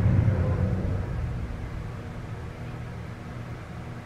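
A low rumble that eases off over the first second or so, then a steady low background hum.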